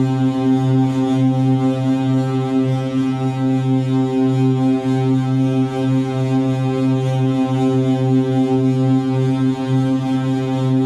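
Modular synthesizer playing a steady low drone: one held pitch with a rich stack of overtones, wavering slightly in loudness without changing pitch.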